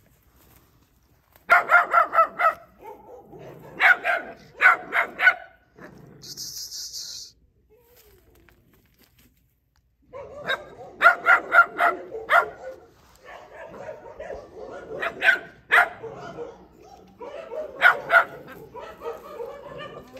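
Blue Lacy puppies barking at a longhorn in quick runs of yaps, in several bouts with pauses between. There is a short hiss about six seconds in.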